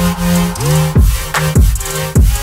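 Electronic background music with a beat: held synth tones over a bass line, with deep bass-drum hits that drop in pitch.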